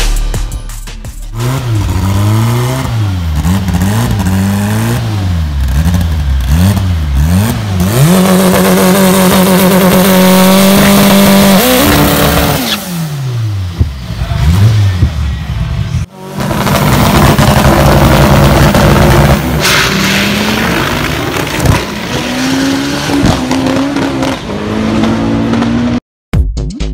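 Turbocharged VW AP four-cylinder engine of a Gol drag car revved hard in repeated quick blips, then held at high revs for a few seconds and let fall. After a break about two-thirds in, it runs on in a dense roar with tyre noise from a burnout, its pitch slowly climbing toward the end.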